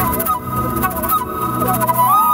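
Background drama score: sustained held tones with a slow, wavering melodic line over them.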